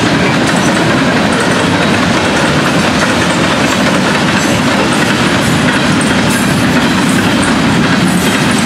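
Florida East Coast Railway freight train rolling past at speed: the loud, steady noise of steel wheels on the rails as a string of covered hopper cars goes by.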